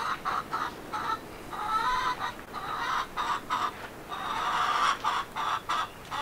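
Chickens clucking in a long, unbroken run of short calls.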